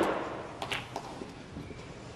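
Snooker balls on a match table: the sharp click of a ball contact fades away at the start, followed by a few faint, light clicks over the quiet murmur of the arena.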